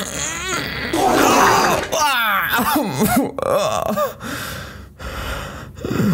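A man's voice straining in repeated groans and grunts with rasping, breathy stretches between, acting out a violent bowel movement.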